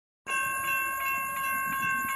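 Railroad crossing bell ringing with rapid, evenly repeated strikes over a steady ringing tone. It starts abruptly just after the beginning.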